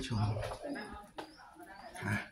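Pigeon cooing in the stone temple, with a woman's voice finishing a word at the start.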